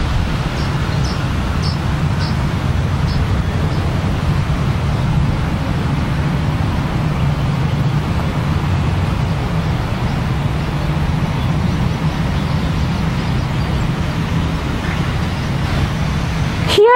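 Steady, loud rushing noise with a low hum underneath, even and unchanging throughout, with a few faint light ticks in the first few seconds.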